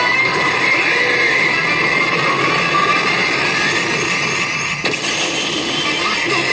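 Sound effects of a Gundam pachinko machine's mobile-suit battle: a dense, steady noise with one sharp hit about five seconds in, over the din of a pachinko parlour.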